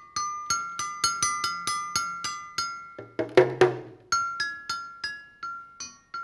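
Percussion solo: a tune of short, high, bell-like struck notes, about three a second. It is broken about halfway by a few louder, lower knocks, the loudest sounds here, and then the high notes carry on.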